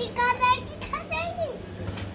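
A young child's high-pitched voice: two short vocalisations without clear words, the second ending in a falling glide.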